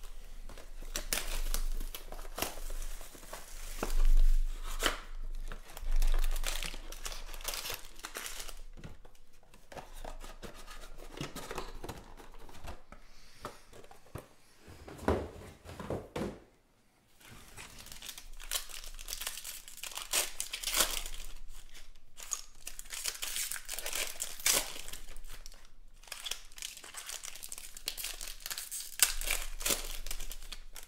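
Foil wrappers of Panini Prizm football card packs crinkling and tearing as they are handled and opened, with a couple of soft thumps early on. There is a brief lull a little past halfway, and the crinkling is denser through the second half.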